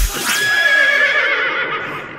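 A dubstep track's heavy bass cuts off, leaving a single sampled cry with a fast wavering pitch that slides slowly downward and fades out.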